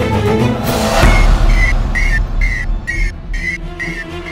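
Dramatic TV-serial background-score sting: a rising whoosh just before a second in, then a deep boom that rumbles on under a high tone pulsing about three times a second.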